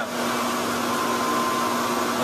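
Server fans and warm exhaust air rushing through a sealed data-center hot aisle: a steady rush of air with a low hum and a faint higher whine running through it.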